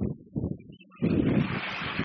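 Wind buffeting the microphone outdoors: a gust rises about a second in and cuts off abruptly.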